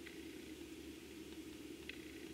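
Quiet room tone: a low steady hum, with one faint click near the end.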